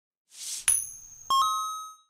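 Logo-reveal sound effect: a short whoosh, then a bright strike with high shimmering tones, then a second ringing ding that fades away over about half a second.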